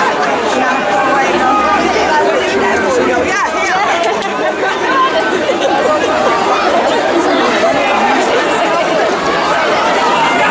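Many voices of a tightly packed crowd talking over one another at close range, a dense, steady babble.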